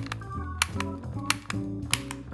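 Sharp plastic clicks of a LightKeeper Pro's Quick Fix trigger being pulled again and again, about one every two-thirds of a second, over background music. Each pull sends a pulse through a socket of the unlit section to correct an internal bulb failure in the light set.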